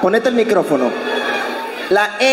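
A person's voice over a stage microphone, wordless and wavering up and down in pitch for about the first second, then trailing off fainter.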